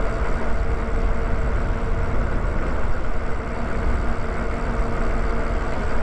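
Lyric Graffiti e-bike cruising at steady speed: wind rushing over the handlebar-mounted microphone and tyre noise on asphalt, with a steady low hum running underneath.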